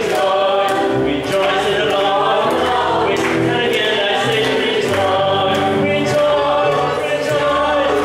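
Worship song: a man singing to his own electronic keyboard accompaniment, with several voices singing along, over a steady beat.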